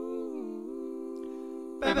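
A man's voice humming one held note that dips briefly in pitch about half a second in and returns, in wordless a cappella improvisation. Near the end, sung 'ba ba' syllables start.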